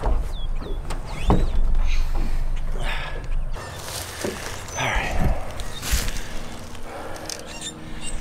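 Birds chirping over a low rumble, then several short scraping noises between about three and six seconds in.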